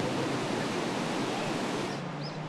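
Steady, even rushing noise with nothing distinct in it.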